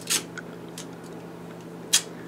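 Duct tape being pulled off the roll and torn: two short, sharp rips, one just after the start and one near the end, with a few faint crackles between.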